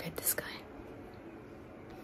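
A woman whispering softly, with no clear voiced tone.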